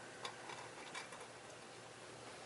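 Quiet room tone with a steady low hum and a few faint, light clicks at irregular intervals, two of them about a quarter second and about a second in.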